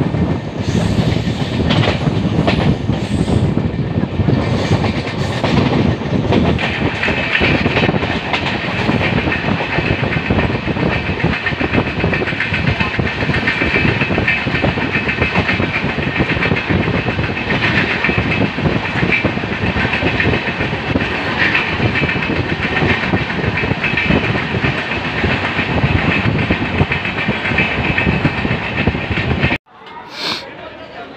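Kerala Express passenger coach running on the rails, heard through an open door: loud, steady wheel-and-rail noise with a clickety-clack. From about seven seconds in, a high metallic squeal joins it. The sound cuts off abruptly just before the end.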